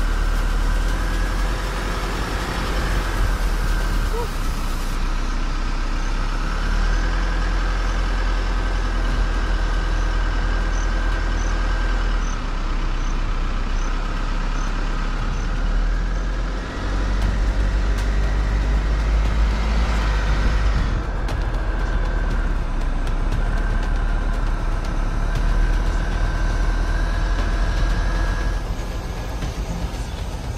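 Motor vehicle engine running steadily with road and wind rumble, heard close up from a vehicle creeping alongside a climbing cyclist, with a steady high whine over the top.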